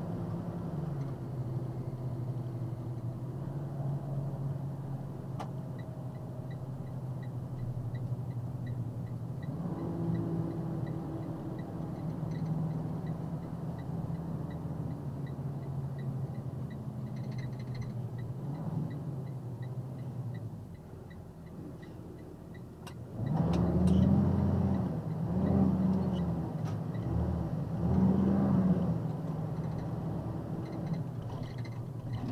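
A box truck's engine running inside the cab while driving, with road noise; its pitch drops about a second in as the truck slows. In the last seven seconds, three loud pitched swells rise and fall over the engine.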